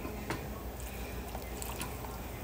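Large pot of pork and hominy broth at a rolling boil: steady bubbling with a few faint ticks.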